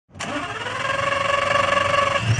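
Car-intro sound effect: a steady engine-like whine over a hiss, starting sharply a moment in.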